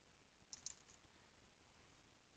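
A quick run of faint computer keyboard keystrokes about half a second in, typing a word, then near silence.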